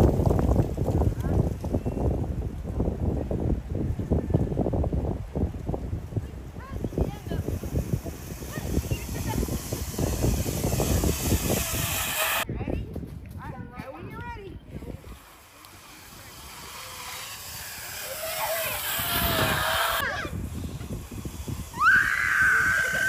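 Zip line trolley running along its steel cable, a rumbling whir that fades as the rider travels away, with children's voices and a high call near the end.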